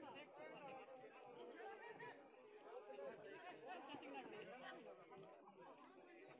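Faint chatter of several voices talking and calling over one another: spectators and players around an outdoor field hockey game.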